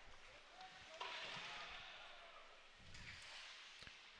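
Faint ice hockey rink sounds: a sudden knock about a second in, then a fading scraping hiss of skates on ice, and a sharp click near the end.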